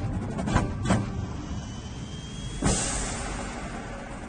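Drum and bugle corps show audio: two sharp percussion hits in the first second, then a thin rising tone, and a sudden loud hit about two and a half seconds in that dies away slowly.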